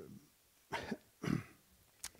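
Two short coughs about half a second apart.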